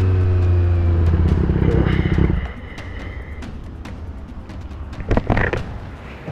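Triumph Street Triple 765 RS's inline three-cylinder engine slowing as the bike pulls over, its pitch falling slightly. After a louder rough stretch it drops to a low idle about two and a half seconds in.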